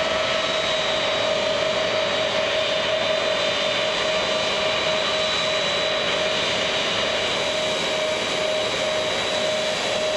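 Lockheed C-5 Galaxy's four turbofan engines running at low taxi power: a steady jet whine with two held tones, one mid-pitched and one high, over a rushing hiss.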